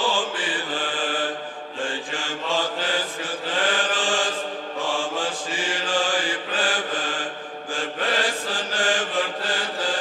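Orthodox church chant: voices chanting a hymn without instruments.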